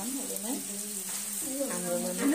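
Faint voices in a room over a steady high hiss, with no clear sound event.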